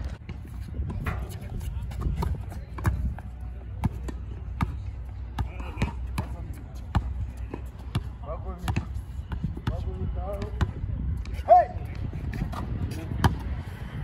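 A basketball being dribbled and bounced on an outdoor hard court, sharp irregular thuds throughout, with players' voices in the background and a brief loud high-pitched call near the end.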